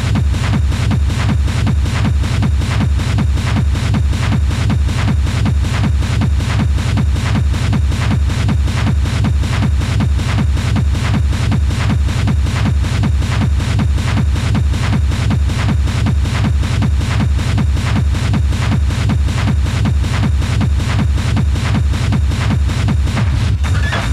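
Schranz hard techno DJ mix: a fast, steady, unbroken beat with heavy bass and dense driving percussion.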